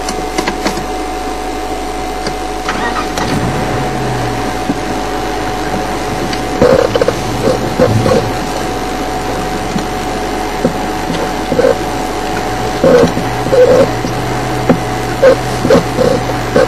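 Safari vehicle's engine running as it drives, a low steady hum that sets in about three seconds in, with repeated short rattles and knocks from about six seconds on.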